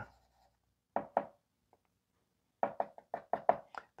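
Chalk tapping on a chalkboard, dotting a vertical line: two taps about a second in, then a quick run of about eight taps near the end.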